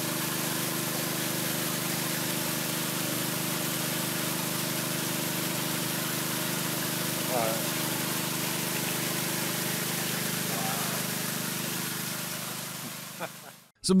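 Swimming-pool pump running, drawing water through an algae-choked skimmer: a steady low hum under an even rushing hiss. It fades out near the end.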